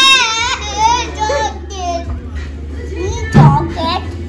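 A young child's high-pitched, wavering vocalisations, strongest in the first second and a half, with a short louder burst about three and a half seconds in. A low steady hum runs underneath.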